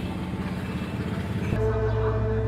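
A vehicle engine running with a steady low hum and road rumble, cut off abruptly about one and a half seconds in by background music with sustained notes.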